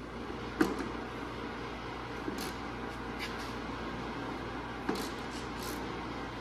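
A hand wrench working the Torx bolts of a snowmobile's chain case cover to break them loose: two sharp metallic clicks, about half a second in and about five seconds in, with a few faint ticks between, over a steady shop hum.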